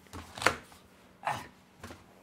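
Knocks and bumps from someone shifting about at a desk close to the microphone: a sharp knock about half a second in, the loudest, another just over a second in, and a faint one near the end.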